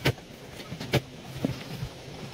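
Steel shovel blade chopping into a bank of red earth, striking about once a second: two sharp strikes, then a lighter one.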